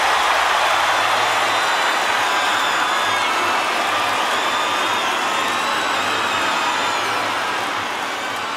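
Concert crowd cheering and applauding after the song ends, with high whistles sliding up and down over the noise; it slowly fades.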